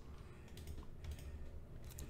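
Faint, irregular clicking of a computer keyboard being typed on.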